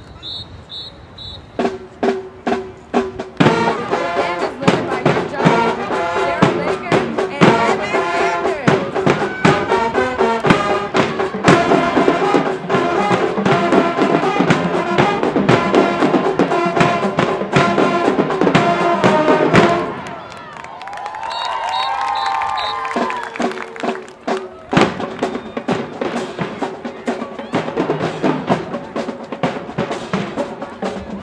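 High school marching band playing: brass over a drumline of snares and bass drums. It builds from a few drum hits into full band music that cuts off sharply about twenty seconds in. Voices shout briefly, then the drumline starts up again with a steady beat.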